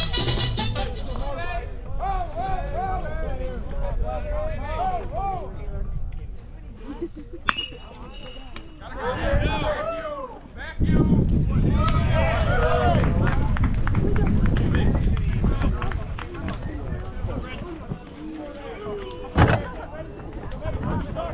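Ballpark chatter: players shouting from the dugout and field, with recorded walk-up music fading out in the first second or so. A single click comes at about seven and a half seconds, then a loud, sharp crack of a metal bat hitting the ball just before the end, as the batter puts it in play.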